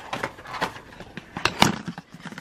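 A small cardboard gift box being opened by hand: a few short rustles and clicks of cardboard and paper, the loudest pair about a second and a half in.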